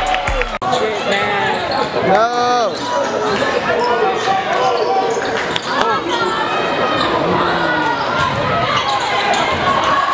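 Live basketball game in a gym: a ball being dribbled on the hardwood court and sneakers squeaking, under crowd voices.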